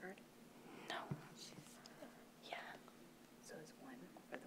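Faint whispering and low off-microphone talk, with short hissy sounds, over quiet room tone.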